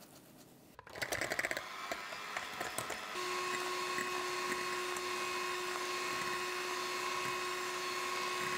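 Electric hand mixer beating egg whites and sugar in a glass bowl: uneven churning at first, then from about three seconds in a steady motor whine as it beats at high speed.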